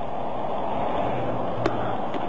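Burning Florida Highway Patrol car, on fire at the front, giving a steady rushing noise with one sharp pop about one and a half seconds in.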